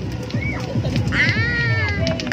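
A young child's high-pitched whine: a brief rising-and-falling cry about half a second in, then a longer drawn-out wail from about a second in, over background music.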